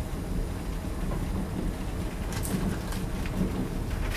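Steady low room rumble, with a few short squeaky marker strokes on a whiteboard a little past halfway.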